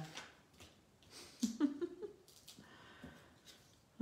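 A woman's short wordless vocal sound, a single 'mm' that rises and falls, about a second and a half in, with faint clicks and rustles of card being handled.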